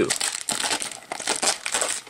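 Clear plastic shrink wrap crinkling as it is worked loose from a small cardboard blind box, a run of irregular crackles.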